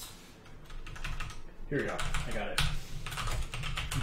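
Typing on a computer keyboard: a run of quick keystroke clicks. A man's voice joins in about two seconds in, over the typing.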